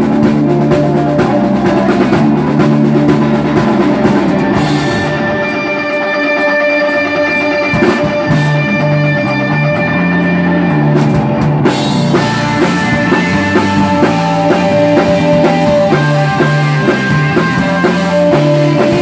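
Rock band playing live on amplified electric guitar, bass and drum kit. About five seconds in the cymbals drop out, leaving a sparser stretch of guitar and bass over light regular drum ticks. The full band comes back in around twelve seconds in.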